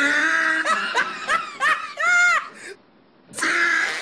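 Loud laughter in short choppy bursts, with a high squeal that rises and falls about two seconds in, a brief pause, then the laughing starts again.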